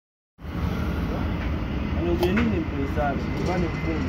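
A steady low background rumble begins a moment in, with faint voices talking over it.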